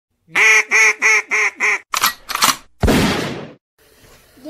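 Intro sound effect over a logo card: five quick nasal, duck-like quacks at about three a second, then two short raspy bursts and a longer hissing burst that fades out.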